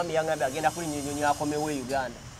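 A person speaking in conversation, over a faint steady hiss.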